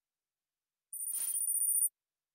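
A short, very high-pitched electronic sound effect from the Kahoot! quiz game, starting about a second in and lasting about a second before cutting off.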